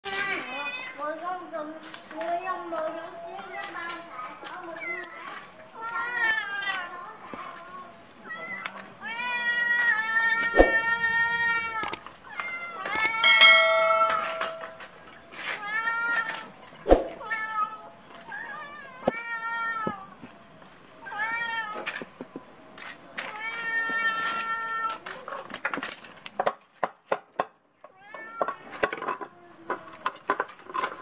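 Domestic cats meowing again and again, each call an arched, rising-then-falling cry, with the loudest calls in the middle. They are hungry cats begging at a plate of food held over them. Near the end there is a quick run of sharp clicks.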